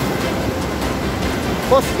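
Steady rushing noise of rain falling on a wet road, with a man's voice briefly near the end.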